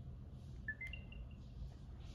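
A faint, short electronic chime of three notes rising in pitch, followed by a few quick repeats of the top note, as the AirTag finishes pairing with the iPhone.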